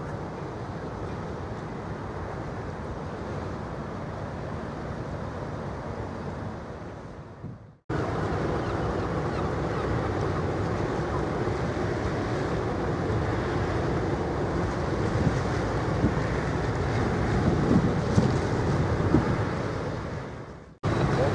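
Wind buffeting the microphone over the low rumble of an offshore supply vessel's engines as it manoeuvres astern through the harbour entrance. The sound cuts out briefly about eight seconds in and comes back louder.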